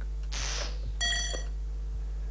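Quiz show's timer sound effects: a clock-like tick about twice a second, a short whoosh about a third of a second in, and a brief electronic beep about a second in, the loudest sound. A steady mains hum runs underneath.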